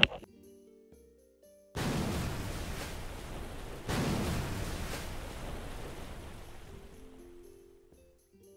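Rushing, splashing water as the face is rinsed at a sink: a sudden surge of water noise about two seconds in and a second one a couple of seconds later, each fading away, over soft background music.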